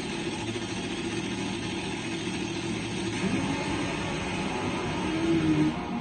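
Top Fuel nitro drag motorcycle engines running at the starting line, a steady engine noise that rises slightly near the end.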